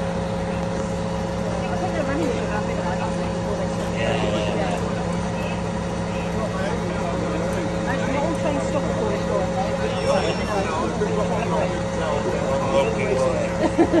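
Heavy lifting crane's diesel engine running steadily with an even low hum, under indistinct voices.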